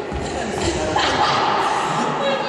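Several people's voices, chatter and calls, echoing in a large sports hall, growing louder about a second in.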